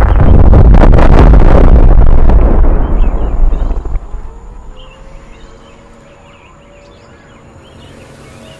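Explosion sound effect of a nuclear blast: a loud, bass-heavy rumbling roar that holds for about three seconds, then dies away over the next two, leaving only a faint low background.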